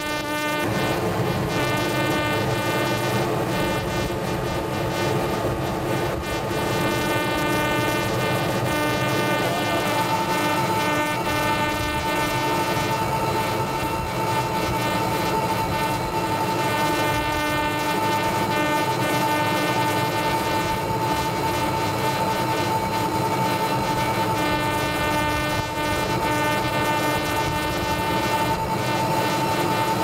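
Steady drone of a warship's deck machinery and ventilation, unchanging in pitch, with a high whining tone joining about ten seconds in.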